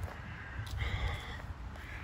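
A bird's harsh caw about a second in, followed by a fainter one near the end.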